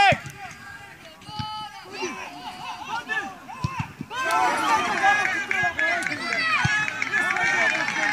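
Players and spectators shouting at a football match: one loud shout at the start, scattered calls, then many voices shouting over each other from about four seconds in, as play reaches the goal mouth.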